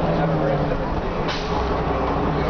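Orion V city bus's Cummins M11 diesel engine running, heard from inside the passenger cabin as a steady drone, with passengers' chatter. A brief sharp noise comes just over a second in, after which the drone turns deeper.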